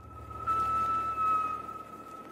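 Start of a channel intro soundtrack: a single held high note over a low hum and hiss, swelling in during the first half second and easing off toward the end.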